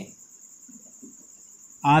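A steady, high-pitched, evenly pulsing trill in the background. A man's voice starts again near the end.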